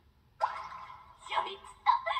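Anime dialogue: a girl's voice speaking Japanese in short, excited phrases.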